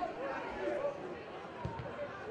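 Faint voices from players and spectators in the live sound of an outdoor football match, with one dull thud near the end.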